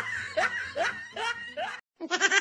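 Laughter: a run of short 'ha' bursts, each dropping in pitch, about two or three a second, cutting off abruptly just before the end.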